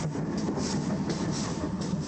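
Steam tank locomotive moving slowly, its exhaust beats coming about three a second over a steady hiss of steam.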